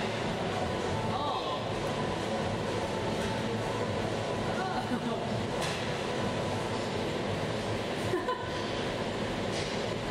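Steady rumbling background noise with indistinct voices, and a brief knock about eight seconds in.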